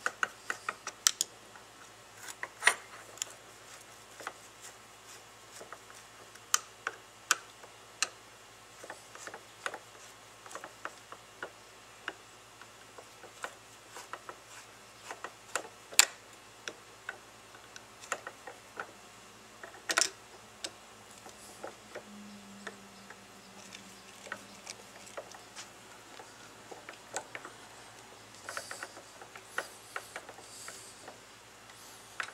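Hand screwdriver turning the 10-32 cover screws of a Fispa SUP150 mechanical fuel pump, drawing them down evenly: irregular sharp clicks and ticks as the blade seats in the screw slots and the screws turn, with two louder clicks about 16 and 20 seconds in.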